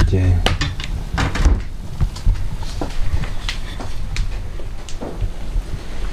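Wooden spoon stirring rosehips in an enamel pot, with irregular clacks and knocks against the pot.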